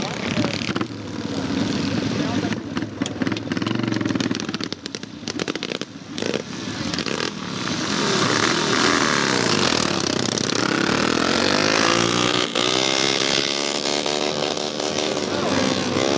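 Vintage Douglas DT speedway motorcycle's twin-cylinder engine, push-started and running on an open exhaust. Its note climbs steadily in pitch over the last few seconds as it revs up.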